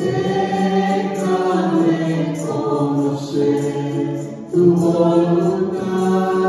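Voices singing a slow hymn in long held notes, with a new phrase starting at the beginning and another about four and a half seconds in.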